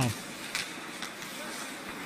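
Ice hockey rink sound during live play: a steady faint hiss of skates on the ice, with a single light click about half a second in.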